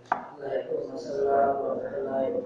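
Sheets of paper being shuffled and handled on a desk, rustling, with a sharp knock just after the start.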